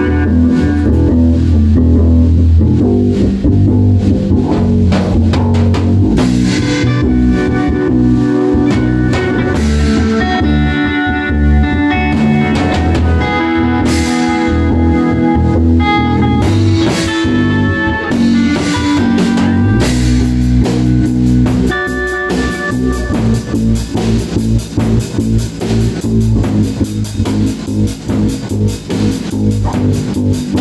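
A rock band playing live: drum kit, electric guitar and electric bass together, with no singing. About twenty seconds in the part changes, and sharper, separate drum hits stand out.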